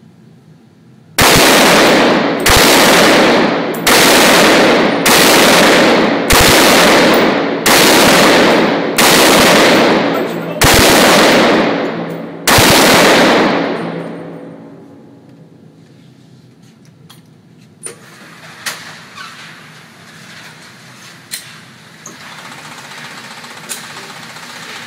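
SKS semi-automatic rifle (7.62×39mm) fired in a steady string of about nine shots, one every second and a half or so, each echoing off the walls of an indoor range. The echo dies away after the last shot, leaving faint knocks and clicks.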